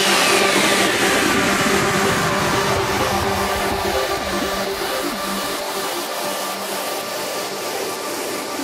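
Electronic dance music breakdown with the beat gone: a hiss of noise carrying a falling whistle-like tone sweeps down over the first few seconds, over faint held synth tones, and the whole thing slowly fades.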